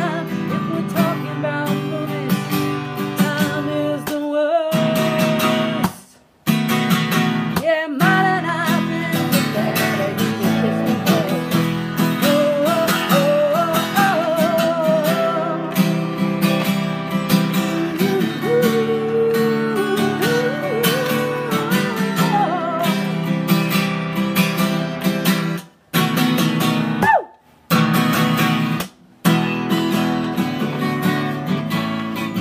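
Acoustic guitar strummed steadily in a song's rhythm, with short full stops in the strumming about six seconds in and three times near the end.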